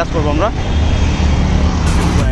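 Road traffic at a busy intersection: motor vehicles running and passing, with a dense low engine rumble. A voice is heard briefly at the start.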